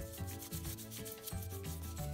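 Paintbrush scrubbing wet paint across paper in short strokes, over background music.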